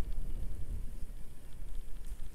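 Wind buffeting the microphone of a camera carried on a moving bicycle: a low, uneven rumble.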